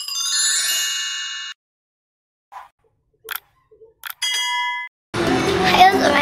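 Two chime sound effects of a video intro: a bright shimmering chime with many high tones that stops about a second and a half in, and a shorter ding of a few steady tones about four seconds in.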